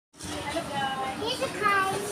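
Indistinct, high-pitched chatter of a child's voice and other voices over steady background noise.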